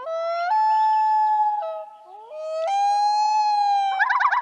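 A title-card sound sting: two sliding pitched tones, each swooping upward and then held steady, in two phrases with a short dip between them, like a howl or siren.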